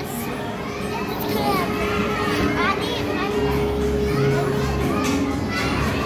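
Many children's voices talking and calling out over one another: the steady babble of a busy indoor play area, with faint music underneath.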